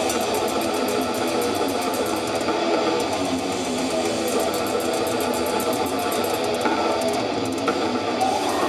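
Death metal band playing live: distorted electric guitars over fast, rapid-fire drumming, heard loud and dense.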